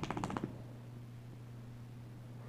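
Small dog moving about quickly: a rapid run of light clicks in the first half second, then quiet with a low steady hum.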